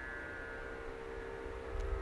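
Faint steady background hum with a low rumble and a few held tones, in a gap between speech, with a faint click near the end.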